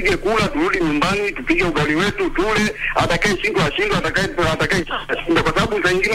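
A person talking continuously, with no pauses.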